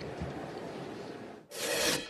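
Faint steady hiss of room tone, then about one and a half seconds in a short whoosh sound effect marking a news-broadcast transition graphic.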